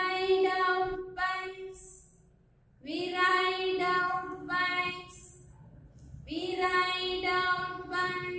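A woman singing a children's action rhyme unaccompanied, in three drawn-out sung phrases with short breaks between them.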